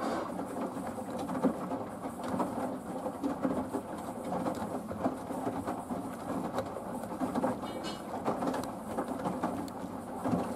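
Samsung WW90K5410UW front-loading washing machine in its main wash, the drum turning and tumbling the wet load: water sloshing and clothes dropping in an uneven, continuous churn.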